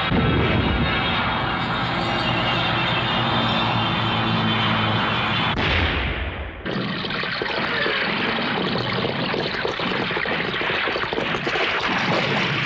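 Film battle sound effects: propeller aircraft engines droning and bombs exploding, mixed with music. The din dips briefly about six and a half seconds in, then the blasts carry on.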